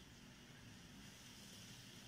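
Faint, steady wind-like hiss of the Koi Pond 3D desktop program's ambient nature soundscape, with the program's music switched off.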